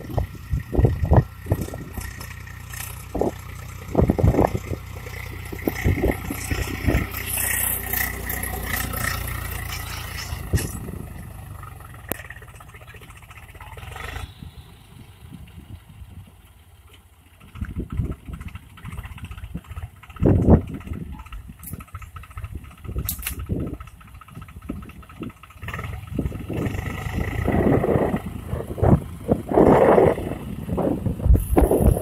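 Swaraj 735 FE tractor's three-cylinder diesel engine running steadily as it pulls a tined cultivator through dry soil, with wind buffeting the microphone in irregular gusts.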